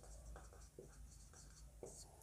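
Faint squeaks of a marker pen on a whiteboard as a word is written, a string of short separate strokes.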